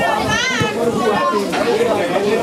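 Overlapping chatter of spectators by the football pitch. In the first second a high-pitched voice calls out, its pitch rising and falling.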